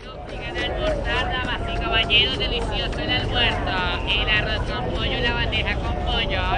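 Many voices talking over one another above a low steady rumble, fading in over the first second: a recorded crowd or street ambience opening a track.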